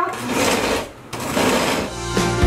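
Countertop blender on its pulse ("food chop"/salsa) setting, the motor running in two bursts of under a second each with a brief stop between, chopping roasted tomatillos and chiles into a chunky salsa.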